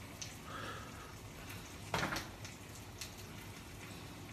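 Faint pattering of garlic salt shaken from a plastic shaker onto raw beef marrow bones, with one sharper tap about two seconds in.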